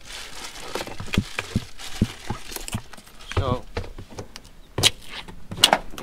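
Scattered sharp knocks and clicks of hand tools being picked up and set against the roof flashing, the loudest two near the end, with a brief murmured voice about halfway through.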